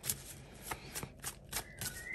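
A tarot deck being shuffled by hand: a quick, uneven run of soft card flicks and slaps.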